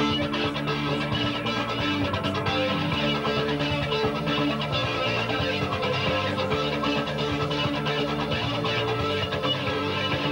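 Stratocaster-style electric guitar being picked over a band backing track, the music running steadily at an even volume.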